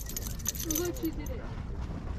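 Low rumble of wind on the microphone, with a faint distant voice about half a second in and a few light clicks near the start.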